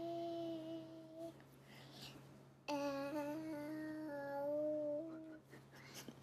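A young girl humming: one held note at the start, then after a pause a longer run of a few sustained notes that step up and down in pitch.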